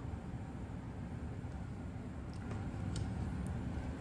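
Quiet room hum with a few faint ticks and a soft rustle as a picture-book page is turned.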